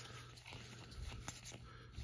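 Faint, scattered soft clicks and slides of Pokémon trading cards being flipped through by hand.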